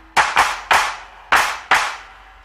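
Handclaps in the song's backing track during a break in the melody: five sharp claps, three close together and then two more after a short gap, each with a brief ringing tail.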